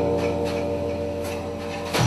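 Live band music: a held chord with a low note and many overtones rings on and slowly fades. A new, deeper drone note comes in right at the end.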